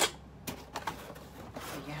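Cardboard box being worked open by hand: a few sharp taps and knocks of the cardboard flaps, the loudest right at the start, then a short papery rustle near the end.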